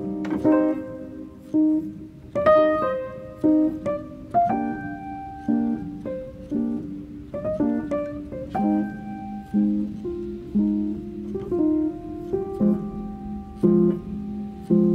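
Background piano music: a slow melody of struck notes, landing about once a second in a steady pulse.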